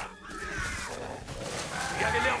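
A velociraptor's film-sound-design vocalisation: faint gliding calls as the raptor whirls round.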